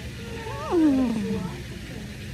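A goat bleating once, starting about half a second in: a single loud call that rises briefly, then slides down steeply in pitch over about a second.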